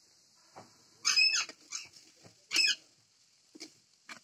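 Two short, loud puffs of breath blown through a metal blow pipe into the wood fire of a mud chulha, about a second and a half apart, fanning the flames under the frying pan.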